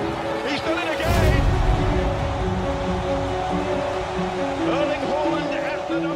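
Background music with held notes and a simple stepping melody plays over match broadcast audio. About a second in, a stadium crowd bursts into cheering for a goal and keeps cheering under the music.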